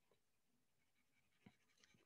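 Near silence, with the faint scratch of a light blue colored pencil shading on paper and a small tick about one and a half seconds in.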